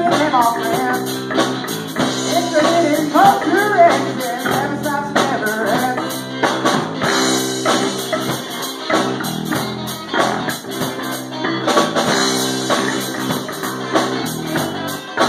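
Live rock band playing electric guitar, bass guitar and drum kit, with sung vocals over roughly the first six seconds, then the instruments carrying on without the voice.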